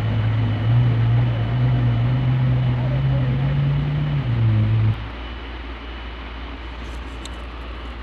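A vehicle engine droning steadily in a flash flood, edging slightly higher in pitch, then dropping and stopping about five seconds in. A quieter, even rush of floodwater is left after it.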